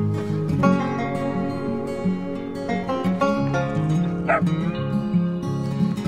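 Background acoustic guitar music with a steady, changing bass line, and a brief upward-gliding sound about four seconds in.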